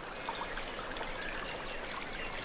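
Steady soft hiss like running water, a soundtrack ambience bed, with a few faint short high chirps in the middle.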